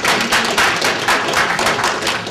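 Audience applauding, a dense patter of many hands clapping that dies away just after the end.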